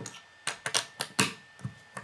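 Plastic Lego bricks clicking as they are pressed together and straightened by hand: a run of irregular sharp clicks, about eight in all.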